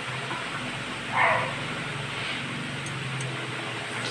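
Pot of fish and pork soup bubbling at a steady boil, with one brief, louder sound a little over a second in.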